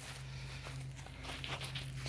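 Faint footsteps on dry leaf litter and grass, a few scattered steps, over a steady low hum.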